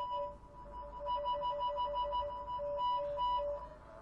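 Tracing tone from a wire-pair tone generator, heard through the speaker of a Greenlee 500XP tone probe in its tone-filtering mode. The tone alternates rapidly between a higher and a lower pitch, several times a second, with the line noise filtered out.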